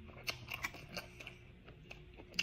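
Close-miked mouth sounds of eating steamed whelk meat: chewing with scattered short, sharp clicks and smacks, most of them in the first second.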